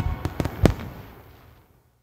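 Fireworks going off: several sharp cracks and pops within the first second, the loudest about two-thirds of a second in, then fading out.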